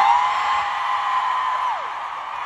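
Concert crowd screaming and cheering, with one high scream close by held for under two seconds and falling away near the end.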